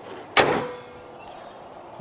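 A Jeep Liberty KJ's hood slammed shut once, a single sharp slam with a brief metallic ring, a test that the hood latch catches on the newly refitted mounting panel.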